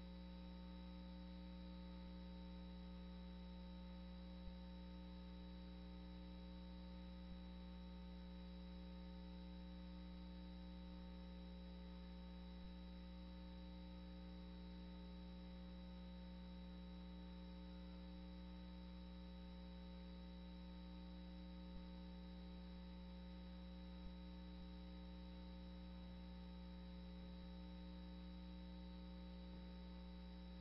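Near silence over a steady electrical mains hum, with a few faint scattered ticks.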